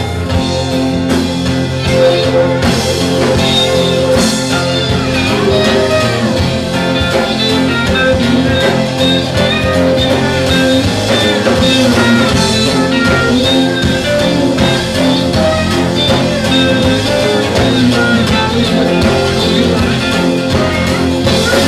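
Live band playing an instrumental stretch of a bluesy acoustic folk-rock song: slide guitar with gliding notes over electric bass and drum kit.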